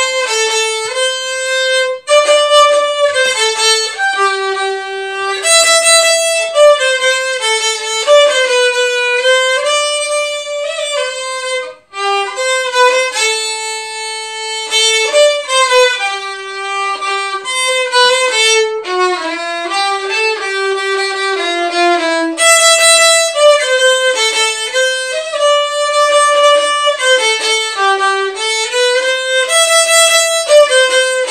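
Solo violin playing a Christmas tune, a single line of bowed notes with a brief pause about twelve seconds in.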